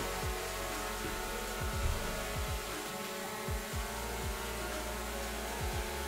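DJI Mavic Air 2 drone hovering indoors, its propellers making a steady many-toned whine, under background music with a beat.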